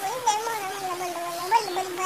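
A long, drawn-out, high-pitched cry that wavers in pitch without a break, jumping up briefly near the start and again about one and a half seconds in.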